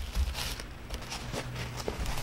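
Handling noise from a canvas lap desk tray being unfolded and set up: fabric rustling with a soft low thump at the start and a few light clicks.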